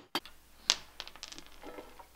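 Rubber mallet tapping on an aluminium A-arm to drive a plastic bushing out over a socket on a wooden workbench. A few light taps, the sharpest about two-thirds of a second in, then a quick run of softer ones just after one second.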